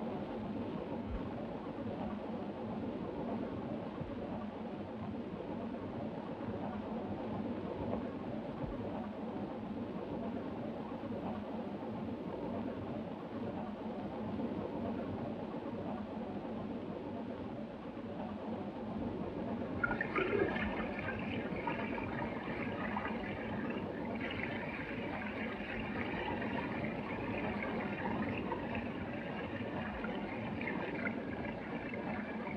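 Steady running noise of a train in motion. About twenty seconds in, water starts running into a washbasin.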